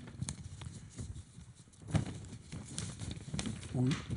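A pause in a spoken reading: a quiet room with a few faint knocks and clicks and a short louder low sound about two seconds in, then a softly spoken 'oui' right at the end.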